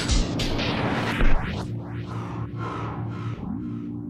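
Background electronic music: steady held synthesizer tones over a low drone, with a string of whooshing swells that fade away one after another.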